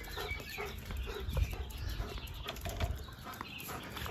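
A hen clucking in short notes, with low thumps of footsteps on concrete.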